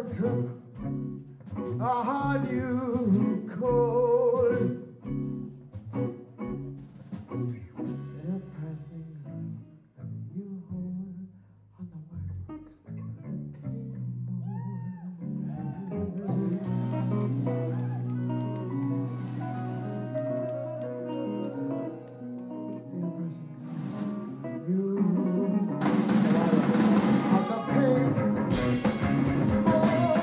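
Live rock band (electric guitars, bass, keyboards and drums) playing stop-start stabbed chords with some singing. The music drops to a quieter stretch about ten seconds in, builds on sustained notes, then the full band crashes back in loud with cymbals near the end.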